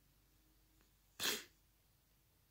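One short, sharp burst of breath from a man, a little over a second in, against faint room tone.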